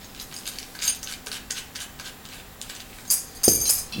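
Small metal clicks and clinks of a brass lamp-holder socket and its fittings being handled and fitted together by hand, with a quick run of brighter jingling clinks about three seconds in.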